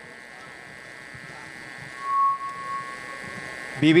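Soft sustained tones held steady over low room noise, with a higher steady tone coming in about halfway and holding.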